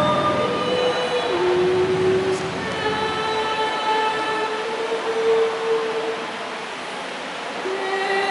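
A group of women singing a hymn to Mary together, drawing out long held notes that step from one pitch to the next. The singing eases off a little near the end, then comes back on a new note.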